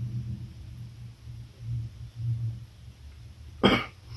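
A man clears his throat once with a short, sharp cough near the end, his mouth burning from scorpion-pepper heat.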